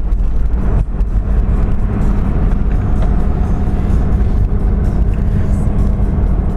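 Mercedes-Benz three-litre diesel car driving, heard from inside the cabin: a steady low engine and road drone.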